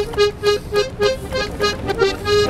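Accordion playing a quick run of short repeated notes, about five a second, over held chord tones.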